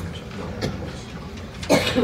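A person coughing close by, one short loud cough about three-quarters of the way in, followed by a smaller one, over low room noise.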